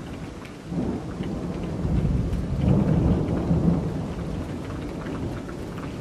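Steady rain falling, with a low rumble of thunder that builds about a second in, is loudest around the middle and slowly fades.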